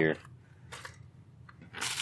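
Plastic and padded paper mailers being handled, with a short crinkly rustle near the end.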